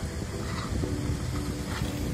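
Wind buffeting the microphone outdoors as a low, uneven rumble, with faint steady tones coming and going in the background.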